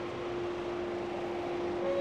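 City street background noise with a steady mechanical hum at one pitch.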